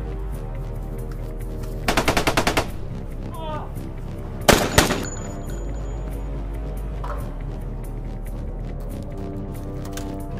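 Gunfire over steady background music: a rapid burst of about eight shots about two seconds in, then one loud single shot with a second, smaller one around the middle.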